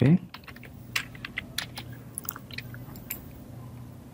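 Computer keyboard keys clicking, irregular scattered keystrokes over a low steady hum.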